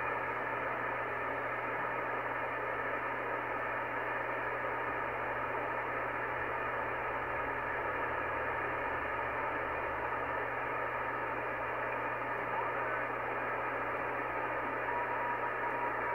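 Icom IC-R8500 communications receiver in upper-sideband mode, tuned slowly around the 2-meter satellite band, giving a steady, muffled hiss of band noise with a low hum beneath it while it searches for the XW-2C satellite's beacon. A faint steady whistle tone comes up near the end, the beacon beginning to be heard.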